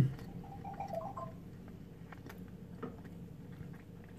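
A person chewing food quietly with the mouth closed: a few faint, soft clicks over low room tone.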